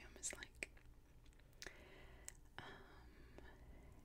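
Near silence, with faint whispering and a few light clicks.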